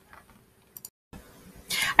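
Quiet room with faint handling sounds from a picture book being moved about, including two small clicks a little under a second in. The sound cuts out completely for a moment just before the midpoint, and a woman starts speaking near the end.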